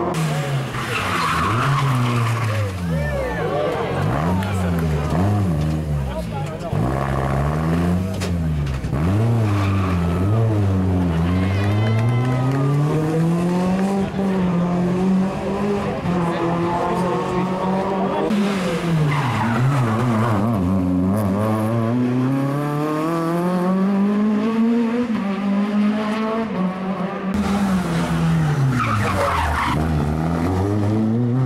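A rally car's engine revving hard on a closed stage, the revs climbing and dropping again and again as it changes gear and lifts off for corners, with a run of quick short blips a few seconds in and longer pulls through the gears later.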